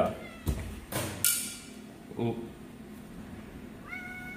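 The incubator's door latch clicks and knocks sharply as the glass door is pulled open, with two or three clicks in the first second or so. Near the end a cat inside gives a single short meow.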